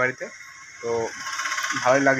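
Mostly speech: a man and a woman talking, with short pauses between phrases.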